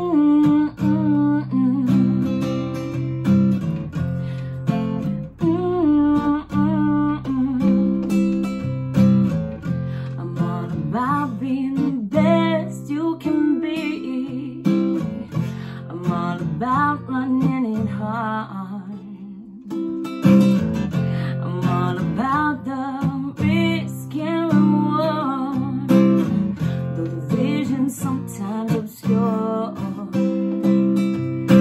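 Steel-string acoustic guitar strummed and picked in a slow song, with a woman singing over it; the playing eases off briefly about two-thirds of the way through.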